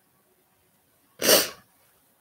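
A woman sneezes once, about a second in: a single sharp, short burst.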